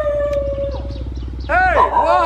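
Dog howling: a long, steady howl that fades about a second in, then a second howl starting near the end that rises and falls in pitch.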